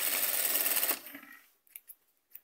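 Jack industrial lockstitch sewing machine running steadily as it stitches a waistband onto fabric, stopping about a second in, followed by a couple of faint clicks.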